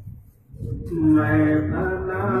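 After a brief lull, devotional chanting by men's voices starts about half a second in, sustaining one long note.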